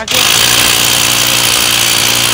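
APR AP35 SDS Plus rotary hammer drill boring into a hard concrete paving block. It starts at once and runs loud and steady under load.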